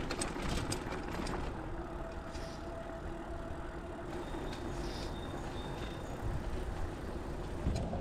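Loaded touring bicycle rolling over cobblestones: a steady rough rumble, with a few sharp clicks in the first second.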